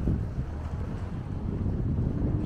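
Wind buffeting the microphone, an uneven low rumble that jumps louder right at the start and keeps fluctuating.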